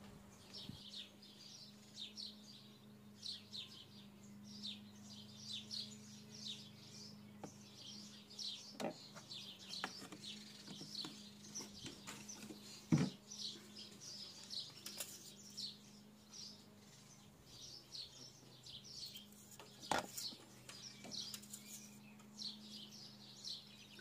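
Small birds chirping faintly and repeatedly, short high chirps coming in runs, over a steady low hum. A few sharp clicks cut in, the strongest about halfway through.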